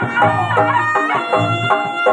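Javanese reog-style traditional music: a nasal reed trumpet (slompret) playing a winding melody over a steady drum beat.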